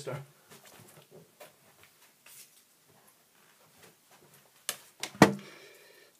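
Faint handling and rummaging sounds as a digital multimeter is fetched, then two sharp knocks about half a second apart near the end as it is set down on the bench, the second one loud.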